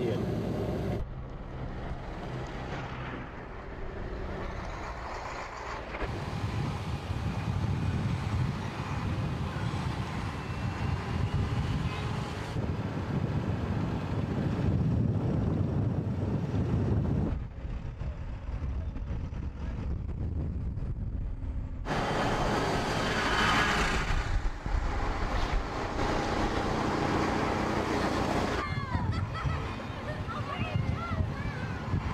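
Armoured patrol vehicles driving: engine and road noise with wind buffeting the microphone, broken by several abrupt cuts between shots.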